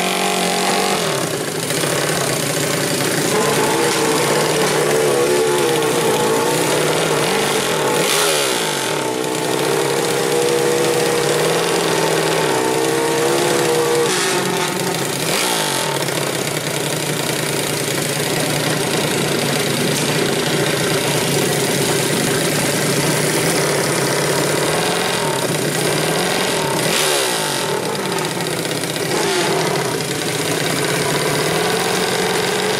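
Modified four-stroke 120cc underbone drag motorcycle engine being revved over and over at the start line, its pitch rising and falling, with a loud background of other engines and noise.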